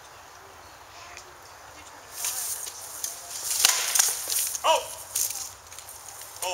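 Practice swords striking shields and armour in a quick flurry of sharp knocks that starts about two seconds in, the hardest blows near the middle. A short vocal cry comes among them.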